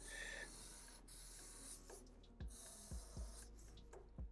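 Black felt-tip marker drawn across paper in faint scratchy strokes of varying length, with a few soft low bumps in the second half.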